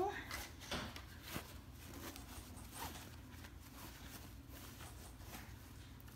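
Faint rustling and soft scraping of curtain fabric being bunched up and pushed along a rope by hand.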